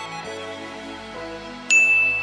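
Soft instrumental background music, then near the end a single bright ding, a struck bell-like sound effect that starts suddenly and rings on as it fades, marking a 'winner' result on screen.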